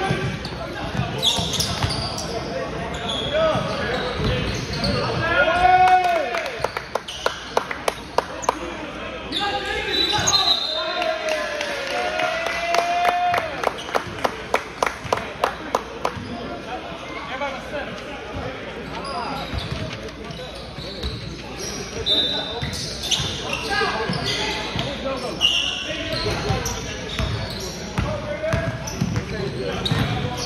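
Indoor basketball game on a hardwood court: a ball dribbled in quick runs of bounces, sneakers squeaking, and players shouting, all echoing in a large gym.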